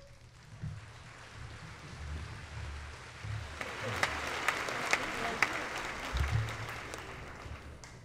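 Audience applauding in a large hall. The clapping swells about three seconds in, is loudest a couple of seconds later, and fades toward the end.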